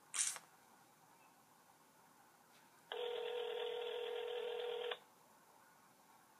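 Telephone ringback tone from a phone held on speaker: one steady ring about two seconds long in the middle, as the outgoing call rings at the other end. A brief soft noise comes just at the start.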